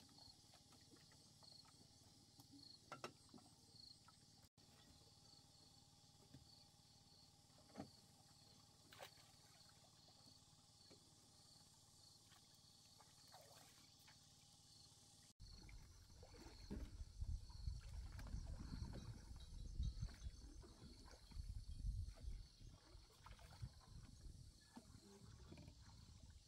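Quiet lakeside ambience with a faint insect chirping in an even rhythm and a few soft clicks. After about fifteen seconds, louder irregular low sloshing and knocking as a small wooden rowboat is rowed alongside a bamboo raft.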